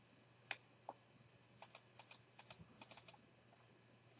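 Computer mouse clicking: two single clicks, then a quick run of about a dozen sharp clicks, as vertices of a polygon are placed and a double-click finishes it.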